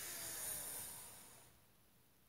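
A woman's deep breath in during a stretch: a soft hiss that swells and then fades over about a second and a half.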